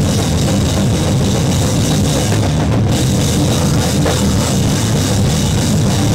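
A live band playing loud, heavy punk/metal-style music at full volume, with a drum kit driving it. The sound is dense and unbroken throughout.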